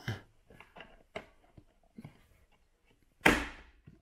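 Snorkel's glossy black cap being pushed down onto the snorkel head: a few faint clicks, then one sharp snap a little over three seconds in as the cap's spring clip engages and locks it on.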